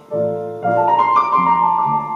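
A live band playing an instrumental passage, with chords over low bass notes and a melody line; the playing comes in again just after a brief lull at the start.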